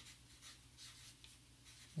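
Felt-tip marker writing on a paper chart pad: faint, short scratchy strokes as a word is handwritten.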